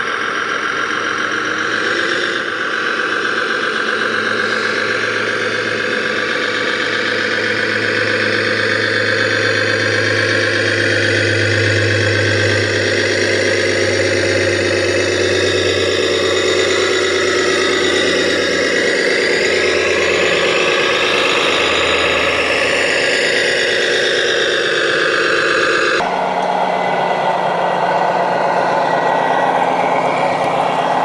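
Simulated diesel engine sound from a radio-controlled model Komatsu HD405 dump truck, a steady drone with a high whine that rises and falls in the second half. Near the end it changes abruptly to another truck's engine sound.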